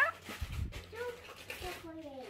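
Faint, whiny vocal sounds from a small child, with a dull low thump about half a second in.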